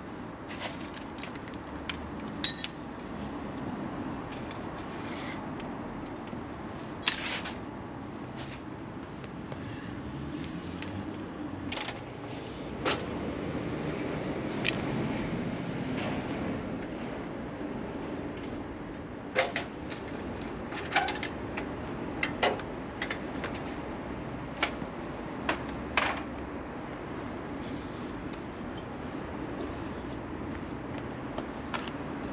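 Scattered metallic clicks and clanks from the parts of a motorcycle trailer being handled and taken apart, over a steady low background hum. The sharpest knocks come in a cluster about two-thirds of the way through.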